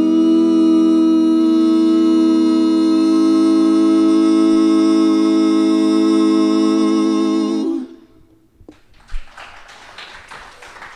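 Live band's closing note: singers hold one long chord that cuts off about eight seconds in. Scattered applause starts about a second later.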